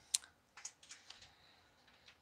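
Computer keyboard being handled: one sharp click just after the start, then a few faint clicks and taps from its keys and plastic.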